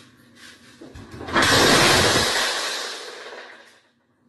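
A glass tabletop shattering: a sudden loud crash about a second and a half in. The falling glass fragments fade away over the next two seconds.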